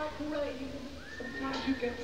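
A lone male rock singer's voice, unaccompanied and wavering in pitch, during a quiet passage of a live concert. About halfway through, a higher tone slides up and holds.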